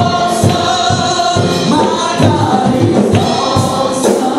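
Live gospel music: a group of singers on microphones singing together over a band keeping a quick, steady beat.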